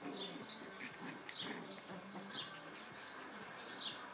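Small birds chirping in short, falling chirps, a few times a second, over low growling from puppies at play.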